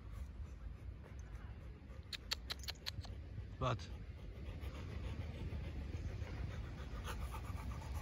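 Rottweiler panting. A few sharp clicks come a little after two seconds in, and a short voice sound falling in pitch comes at about three and a half seconds, the loudest moment.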